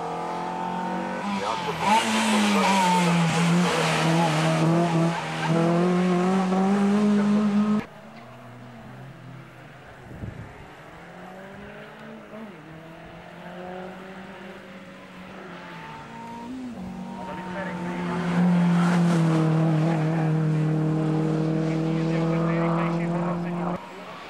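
Renault Clio race car's engine held at high revs as it drives hard through bends, its pitch dipping about two seconds in and then holding steady. After an abrupt cut a little before the middle, the engine is heard fainter and farther off, then grows loud again near the end as the car comes closer.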